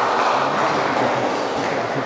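Table tennis balls being struck and bouncing on the table, a few light ball clicks, over a steady background of many voices in a large hall.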